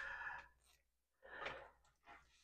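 Mostly near silence, with two faint, soft breaths: one at the start and another about one and a half seconds in.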